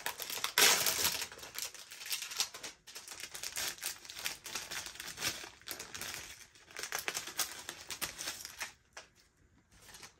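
Plastic packaging crinkling and rustling in spurts as a small jewellery packet is opened and the necklace card is pulled out. It is loudest about half a second in and dies away near the end.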